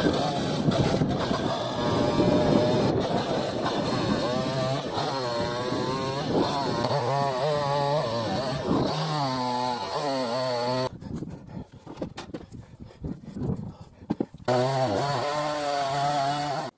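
Perla Barb 62cc V4 two-stroke chainsaw cutting through logs, its engine pitch rising and falling as the chain bites. About eleven seconds in it drops away for roughly three seconds, then comes back at full revs for another cut.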